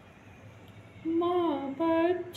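A woman humming a slow tune: after about a second of quiet, one held note that slides downward, then a second held note near the end.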